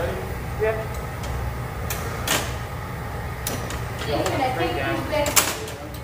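Steady low roar of the hot shop's gas-fired glass furnace and burners, with two sharp clicks, one about two seconds in and one near the end.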